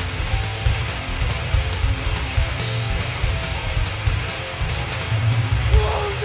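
Stoner-metal band playing live: a distorted electric guitar riff over bass and drums, an instrumental stretch with no vocals.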